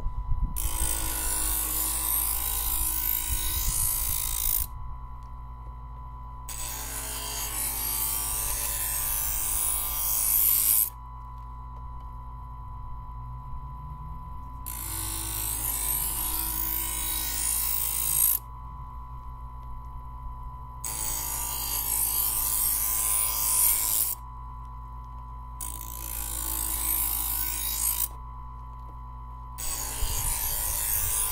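Presto Professional electric knife sharpener running with a steady motor hum, while a dull stainless steel kitchen knife is drawn through its grinding slot six times. Each pass is a hissing grind lasting a few seconds, with the motor humming alone between passes.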